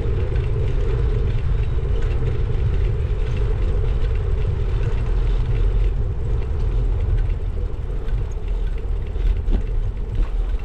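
Riding noise from a bicycle rolling over block paving: a steady low rumble of tyres and wind on the microphone, with a hum that weakens after about seven seconds.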